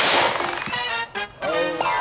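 A single revolver shot right at the start, its report trailing off over about half a second. Background music plays underneath.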